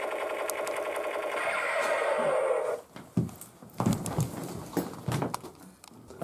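Toy submachine gun's electronic rapid-fire sound effect, a steady buzzing rattle that cuts off suddenly after about three seconds, followed by a few soft knocks and rustles.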